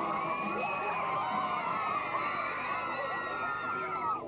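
A crowd of teenagers shouting and cheering a tug-of-war pull, with long high-pitched screams over many overlapping voices.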